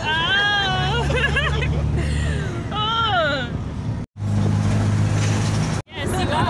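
A woman laughing and exclaiming inside a car's cabin over the steady low drone of the engine and road. The audio cuts out briefly twice, once about four seconds in and again near the end; between the cuts only the engine drone is heard.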